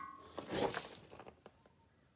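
A metallic clink ringing out briefly and dying away, then a short rustling hiss about half a second in, before it goes nearly quiet.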